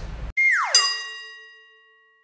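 Transition sound effect for a title card: a quick downward glide in pitch that lands on a bell-like ding with several overtones, ringing and fading out over about a second.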